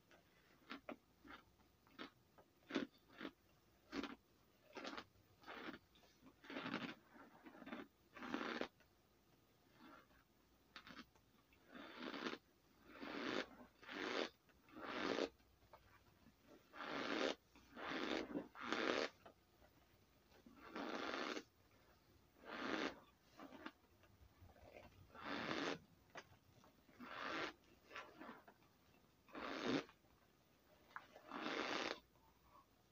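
Cornstarch being eaten by the handful close to the microphone: crunching bites and breathy mouth noises come in short bursts about once a second, with quiet gaps between.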